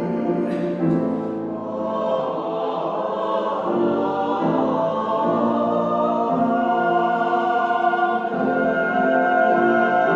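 A small mixed choir of men's and women's voices singing a sacred anthem in parts, with held chords that move every second or so.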